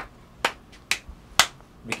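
One hand slapping down onto the other hand, alternating palm and back, in a steady rhythm of four sharp slaps about two a second. This is the rapid alternating movement test for coordination, done at a steady speed and sequence: a normal response with no sign of cerebellar incoordination.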